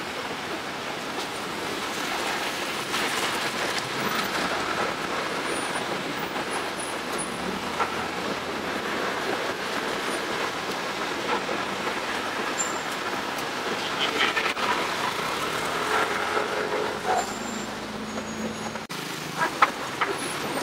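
City street traffic: cars running and moving slowly past in a steady wash of engine and road noise, with a few brief knocks and a sharp one near the end.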